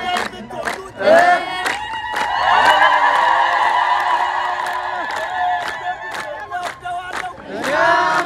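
A group of voices chanting and singing together over an even beat of about three strokes a second, with a long held chord in the middle.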